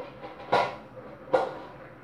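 Two short clanks of cookware about a second apart as a glass lid is lifted off a cooking pot on the stove.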